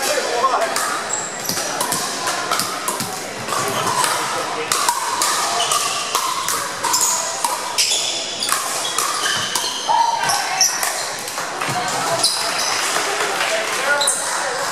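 Pickleball paddles striking plastic balls, many sharp pops throughout from this and neighbouring courts, ringing in a large hardwood-floored gym over background chatter.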